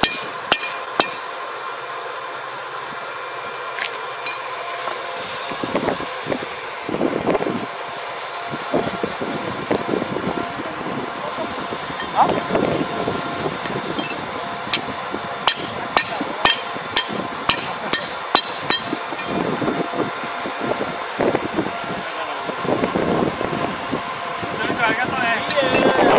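Rice stalks being cut by hand with a sickle at the field edge: irregular crisp cutting and rustling of dry straw, with a run of sharp clicks about two-thirds of the way through.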